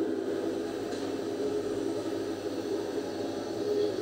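Steady background noise with a faint hum, no speech, heard through the microphone during a pause in the talk.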